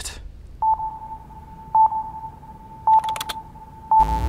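Short electronic beeps of a single pitch, repeating about once a second, four times, each starting with a click. A quick run of sharp clicks comes around the third beep.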